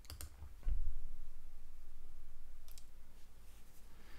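Light clicks at a computer: a quick pair right at the start and another pair near three seconds in, with a low thump shortly after the first pair.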